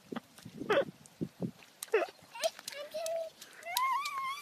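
Toddler giggling and vocalizing in short high-pitched rising and falling bursts, with a longer held high call near the end.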